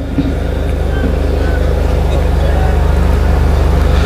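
A loud, steady low drone like a running engine, unbroken through the pause in the chanting.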